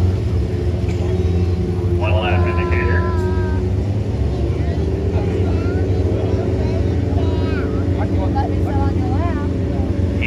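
Engines of several small open-wheel dirt-track race cars running steadily at low speed as the cars circle the track, a continuous low drone. Voices are heard faintly at times.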